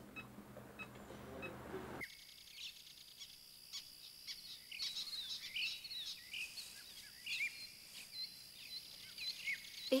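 Songbirds chirping and singing, many short calls and trills. For the first two seconds before them, a low hum with soft regular beeps.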